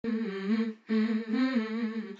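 A woman's voice humming a wordless melody, unaccompanied, in two phrases with a short break just under a second in.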